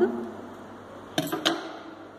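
Two sharp clicks about a quarter of a second apart, a little past the middle.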